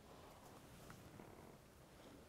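Near silence: room tone with a steady low rumble, and a faint rustle of paper being handled about a second in.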